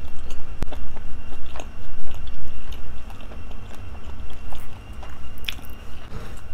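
Close-miked chewing of a juicy bite of kielbasa sausage: wet mouth clicks and smacks scattered throughout, with a sharp click about half a second in.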